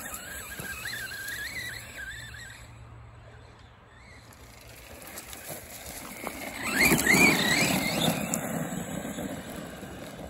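Arrma Big Rock 3S RC monster truck's brushless motor whining under throttle, its pitch wavering up and down, with the tyres churning over grass. The loudest burst comes about seven seconds in as the truck accelerates away.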